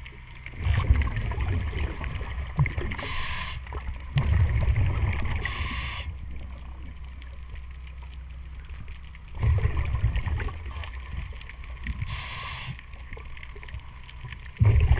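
Diver's scuba regulator breathing underwater: three short hissing inhalations alternating with rumbling bursts of exhaled bubbles.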